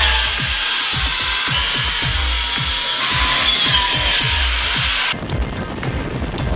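Background music with a steady beat. Over it runs a loud rushing whir with faint whining tones from a zip-wire trolley's pulleys running along the steel cable, and the whir cuts off suddenly about five seconds in.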